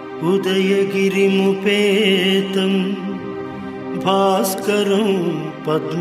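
Devotional music: a steady drone under a chanted Sanskrit hymn. The chanted line comes in just after the start and wavers in pitch.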